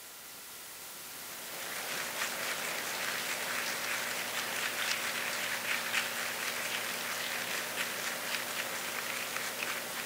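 Audience applause that swells over the first two seconds and then holds steady, with a faint steady hum underneath.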